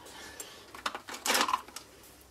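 Hands fetching and picking up blender pens: light plastic clicks, and a short clattering rustle about two-thirds of the way in.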